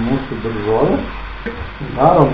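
Diced vegetables frying in oil in a pot, sizzling as they are stirred and scraped with a wooden spatula.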